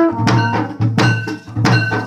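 Loud procession music: a drum struck in a steady beat, about three strokes every two seconds, with ringing metallic tones over it and a steady low hum underneath.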